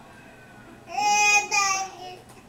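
Baby vocalizing: a loud, drawn-out, high-pitched coo in two parts, starting about a second in.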